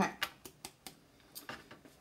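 Scattered light clicks and knocks, about eight in two seconds, of a handheld electric sander and other tools being handled and set down on a work table.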